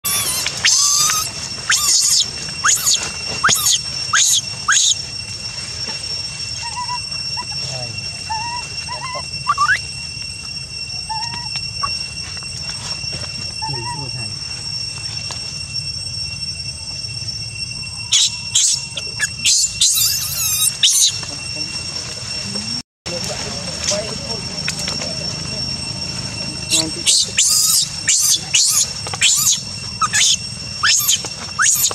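Monkey squealing in flurries of short, shrill calls: a burst near the start, another about two-thirds through and more near the end, with a few softer chirps between them. A steady high whine runs underneath.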